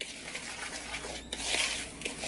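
A spoon stirring dry graham cracker crumbs, flour and baking powder in a mixing bowl: soft scraping and rustling, loudest about a second and a half in.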